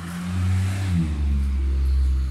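A motor vehicle's engine running close by, a low rumble that grows louder about a second in.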